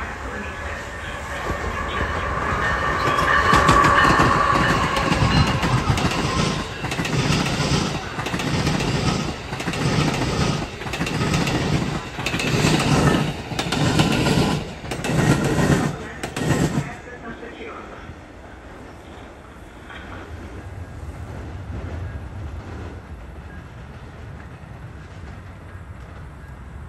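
An Amtrak passenger train hauled by a Siemens ACS-64 electric locomotive runs past close by, building to its loudest about four seconds in. As the cars go by, the wheels give a regular clickety-clack over the rail joints about every second and a half. The clatter stops sharply about two-thirds of the way through, leaving a fainter rumble as the train pulls away.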